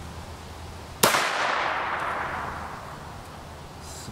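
A single 9mm gunshot from a 16-inch-barrel carbine about a second in, a sharp crack followed by an echo that fades over about two seconds.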